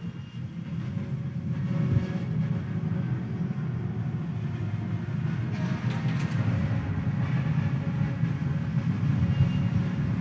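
Low, steady rumble of a large congregation settling into its pews after being asked to sit, with shuffling and murmur carried by the church's echo; it grows slightly louder as it goes on.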